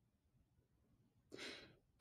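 Near silence, then one short intake of breath about a second and a half in, just before speech begins.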